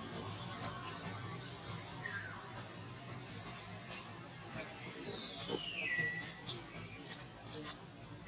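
Birds chirping in the trees: short rising chirps repeated every second or so, and one long falling whistle about five seconds in, over a low steady hum.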